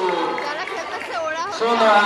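Only speech: a girl talking, with other girls' voices chattering around her.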